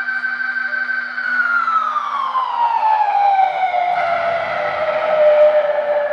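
A sustained electronic tone from a rock band's amplified stage gear, held steady for about a second and then gliding slowly down in pitch over the next few seconds, over a steady low amplifier hum.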